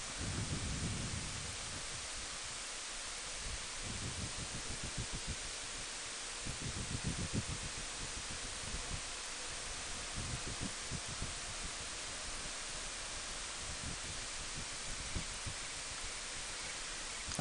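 Steady rush of wind over a motorcycle-mounted microphone while riding at road speed, with irregular low gusts of buffeting.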